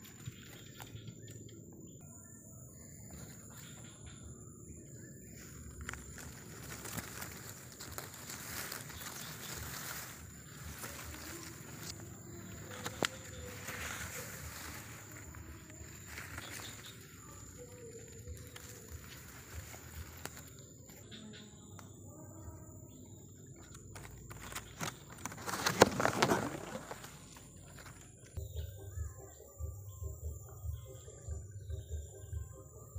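Leaves and stems rustling as someone pushes on foot through dense undergrowth, loudest in a burst near the end, over a steady high-pitched insect drone.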